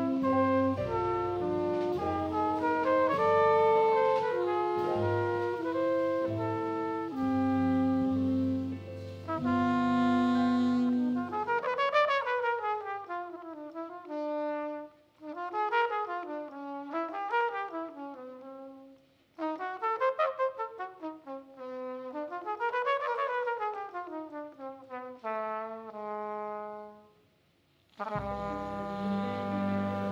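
Live jazz quintet playing, horns holding notes over bass, piano and drums; about twelve seconds in the band drops out and a trumpet plays fast unaccompanied runs sweeping up and down, with short pauses between phrases, until the full band comes back in near the end.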